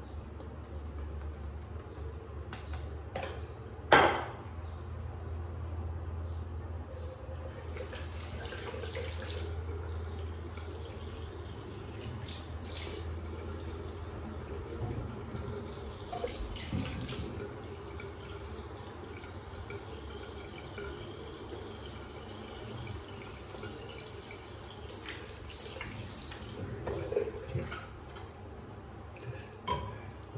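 Wet shaving lather being brushed on the face with a 28 mm synthetic shaving brush, in several short spells. A sharp knock about four seconds in is the loudest sound, and a low hum runs through the first half.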